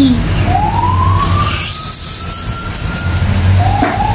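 A siren: a single tone rising slowly in pitch over about three seconds, then beginning another slow rise near the end.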